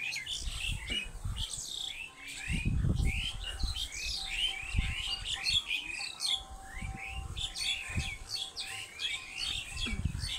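Many small birds chirping busily, short quick calls overlapping several times a second, with low rumbles on the microphone from the moving camera, loudest about three seconds in.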